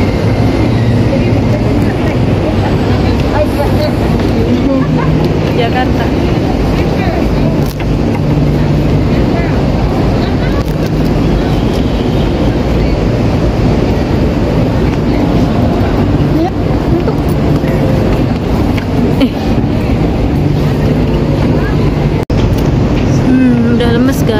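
Indistinct voices of people nearby over a steady, loud low rumble of outdoor city noise.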